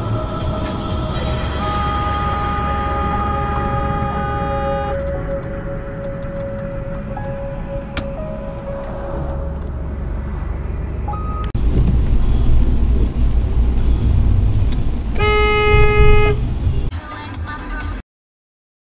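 A car horn sounds once for about a second, near the end, over background music and the low rumble of a car driving at speed.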